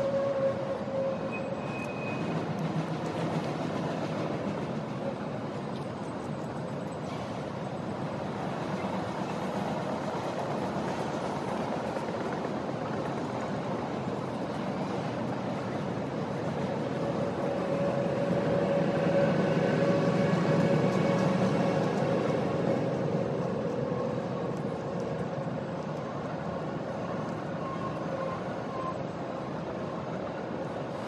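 Distant Canadian Pacific intermodal freight train with GE ES44AC diesel locomotives, a steady rumble with thin ringing tones above it that swells past the middle and then eases.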